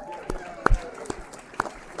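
Applause: a few loud hand claps close to the microphone, roughly half a second apart, over scattered clapping and voices from the audience.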